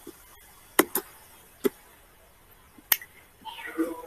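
Four short, sharp clicks, irregularly spaced over about two seconds, in a quiet room.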